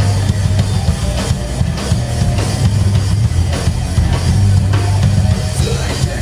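Live heavy rock/metal band playing: two electric guitars over a drum kit, with a steady, heavy bass-drum beat.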